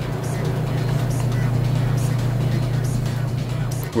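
Background music: a deep held note with faint, regularly recurring percussion ticks over it.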